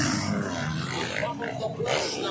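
Motocross dirt bike engines revving and running on the track, with voices in the crowd.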